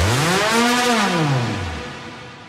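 Electronic music transition: a synthesizer tone sweeps up in pitch and back down in an arch over a hiss-like wash, the whole sound fading out as one track ends.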